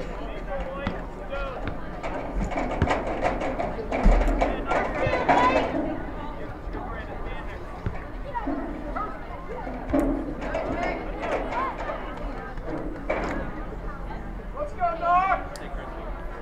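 Scattered voices of spectators and players calling out and talking during an outdoor soccer game, busiest a few seconds in, with a high-pitched shout near the end.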